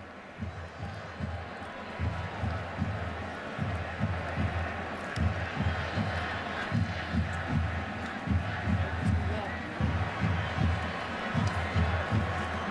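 Stadium crowd noise with a steady beat of deep thumps, about two a second, from about two seconds in.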